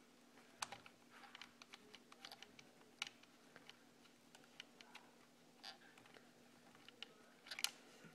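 Faint, irregular small clicks and ticks of a hand driver turning a long screw out of an RC truck's plastic chassis, over a faint steady hum.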